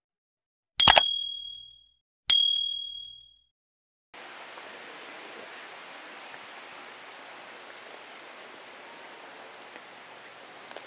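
Two bell-like dings about a second and a half apart, each a clear high tone that rings out for about a second: a subscribe-button and notification-bell sound effect. From about four seconds in, a steady even hiss of room ambience follows.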